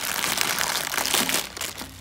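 Thin plastic bag wrapping crinkling as fingers work it open, a dense crackle that thins out in the last half-second.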